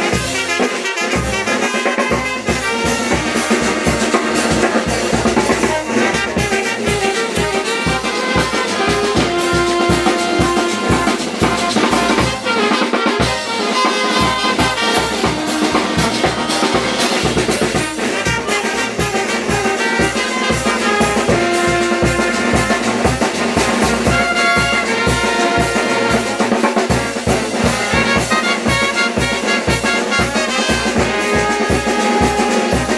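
A brass band playing a lively dance tune: trumpets and other brass carry the melody over a steady beat from a bass drum with a mounted cymbal and a snare drum.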